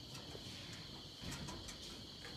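A steady, high-pitched chorus of insects, with a few faint clicks over it a little after a second in.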